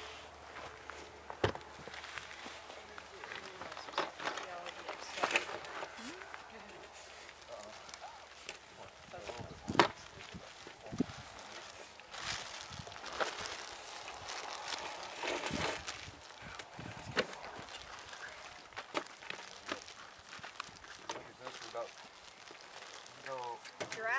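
Scattered knocks, clicks and scrapes of black plastic tubing being handled and fed down a well by hand, with faint voices in the background.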